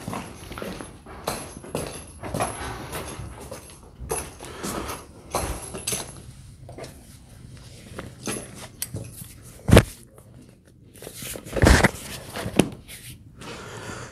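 A leather girth being handled and fastened under a horse's belly: leather rustling, metal rings and buckles clinking, and footsteps, with two louder knocks about ten and twelve seconds in.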